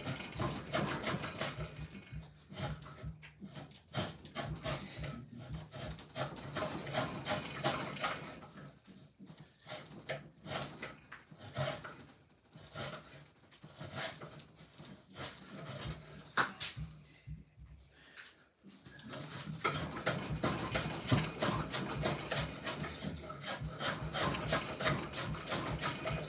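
Two-handled hand shave cutting wood off an axe-handle blank in many short, quick strokes, pausing briefly about two-thirds of the way through.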